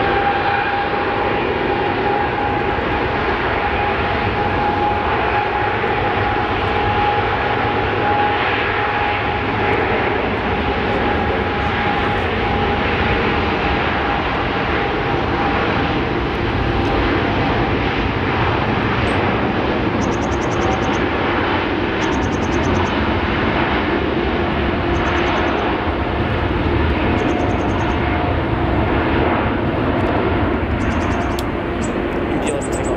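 Boeing 747 freighter's jet engines at take-off power during the take-off roll: a loud, steady engine noise with a high whine that slowly falls in pitch as the aircraft moves past.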